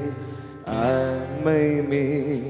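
Male vocals singing long held notes with vibrato over an acoustic guitar, live. The sung phrase fades about half a second in and a new held phrase begins just after.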